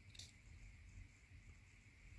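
Near silence: faint room hiss, with one faint click about a quarter second in as the oil filter's cut-off metal base plate is handled.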